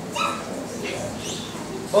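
Young children's high-pitched voices over room chatter: a short call just after the start, then a couple of brief rising squeals around the middle.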